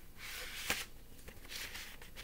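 Rustling of a vinyl LP jacket and record sleeve being handled: two short bursts of rustle, the first with a sharp click near its end.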